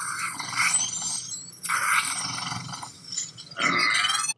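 A young dragon in a fantasy TV drama's soundtrack screeching and hissing in two long, harsh stretches, then a shorter, higher pitched cry near the end.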